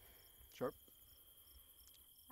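Crickets chirping in a steady night chorus: a continuous high trill with a shorter chirp repeating about twice a second.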